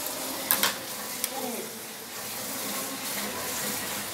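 A few light clicks of a scoop against a powdered-milk tin and a glass, over a steady background hiss.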